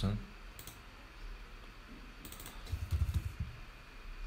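Computer keyboard typing: a single keystroke about half a second in, then a quick run of keystrokes from about two seconds in to past three seconds.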